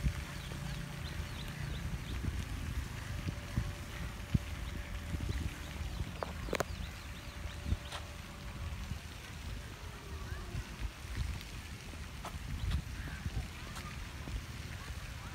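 Outdoor wind rumbling on a handheld phone microphone, uneven and strongest in the low end, with a few sharp clicks of handling.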